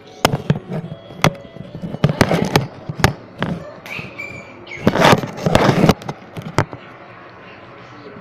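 Handling noise from the recording phone as it is carried and set down on the stairs: a string of sharp knocks and bumps against the microphone, with a louder stretch of rubbing and scraping about five seconds in, then it goes still.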